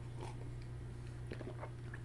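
Faint sipping and swallowing from a mug: a few small mouth and throat noises over a steady low hum.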